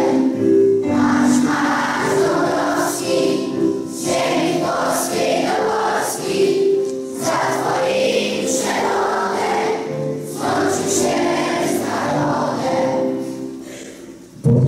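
A large group of schoolchildren singing together in unison, phrase by phrase with short breaks, the singing tapering off near the end.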